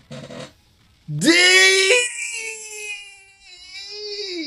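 A drawn-out yell from an anime character's voice. It rises in pitch about a second in, holds, then trails off with a wavering tone, after a short noisy rush at the very start.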